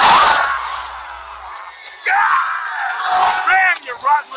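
Animated film soundtrack: a loud rush of noise at the start as go-karts speed off in a cloud of dust, followed by characters' voices with music underneath.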